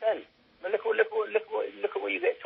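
A man speaking in a thin, telephone-like voice with no low end. It starts after a brief pause near the start.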